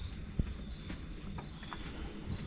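Crickets chirping: a steady high trill with a pulsing chirp repeating about four times a second, over a low background hum.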